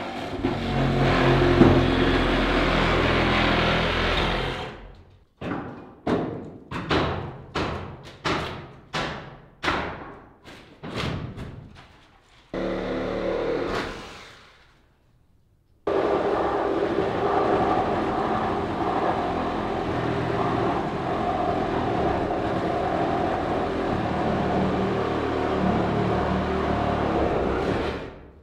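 A power saw cutting into the wooden roof from above, running steadily. In between come about nine sharp knocks, a little under a second apart, like blows on the roof timbers. The saw runs again through the second half.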